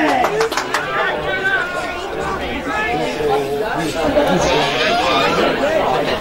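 Several people talking and calling out over one another: sideline chatter from spectators and players, with no single voice clear.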